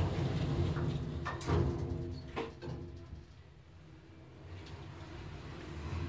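Elevator car descending: a faint steady hum from the lift machinery, fading out midway and returning, with a couple of soft knocks in the first few seconds.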